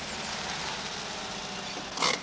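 Small four-wheel-drive utility vehicle driving along: steady engine and road noise that grows slowly louder.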